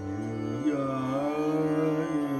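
Male Hindustani classical vocal in Raga Bairagi over a steady tanpura drone; the voice slides up to a new note about half a second in and holds it.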